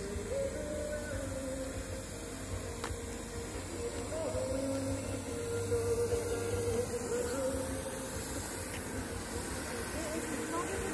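Distant outdoor festival ambience: faint music and voices carrying from afar over a steady low hum.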